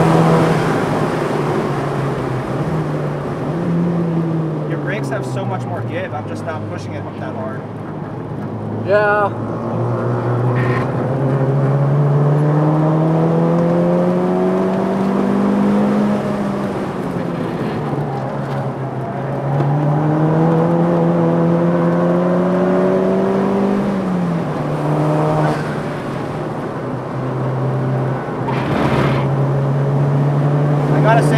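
Tuned 2007 Volkswagen MK5 GTI's turbocharged four-cylinder heard from inside the cabin at full track pace. The engine note climbs steadily in two long pulls under acceleration and falls off sharply each time the driver lifts and brakes for a corner.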